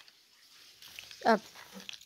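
A single short vocal sound falling in pitch, about a second in, amid otherwise quiet room sound with a few faint clicks.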